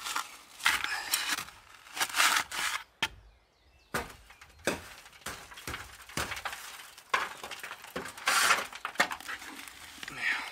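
Gritty scraping and crunching of wet cement being scooped from a plastic bucket and worked with a trowel, in irregular bursts with a brief lull about three seconds in.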